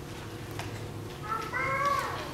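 A quiet hall with a couple of faint clicks, then a short high-pitched cry in the second half that bends downward in pitch as it fades.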